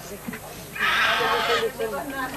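Crowd of people talking, with a shrill, high-pitched vocal cry lasting about a second in the middle.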